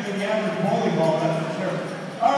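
Indistinct talking in a large ice arena, with no clear words.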